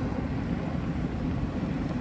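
Steady low rumble of a motor vehicle's engine.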